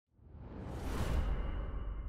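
Logo-reveal whoosh sound effect: a rushing swell that rises out of silence, peaks about a second in over a deep low rumble, then its hiss dies away while the rumble holds.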